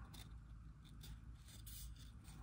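Faint rustling and sliding of a stack of 2022 Panini Zenith football cards being thumbed through by hand, with a few light ticks of card edges.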